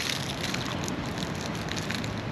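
Cellophane wrapper of a Gloria candy crinkling as it is unwrapped, a dense crackle with a few sharper crackles.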